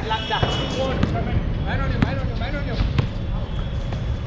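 A basketball bouncing and knocking on a hard outdoor court, a few sharp hits about a second apart, with players calling out to each other during play.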